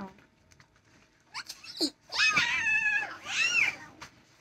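A child imitating a cat: a couple of short squeaks, then two drawn-out, high-pitched meows in the second half, the first rising and held, the second arching up and down.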